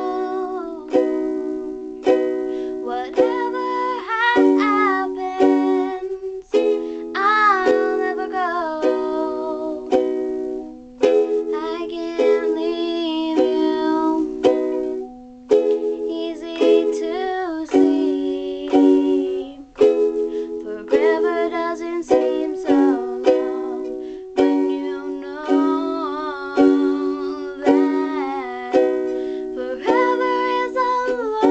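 A young girl singing a melody while strumming chords on a ukulele, the strums coming at a regular beat under her voice.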